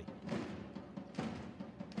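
Drumbeats in the volleyball arena, with a sharp hit about a second in as a jump serve strikes the ball.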